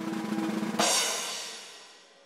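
Musical flourish: a short snare drum roll that ends about a second in on a cymbal crash, which rings and fades away.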